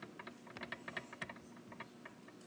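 A faint, quick run of light, irregular clicks, like keys being typed.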